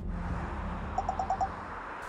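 Outdoor ambience: a steady airy hiss, with a quick run of five short chirps about a second in.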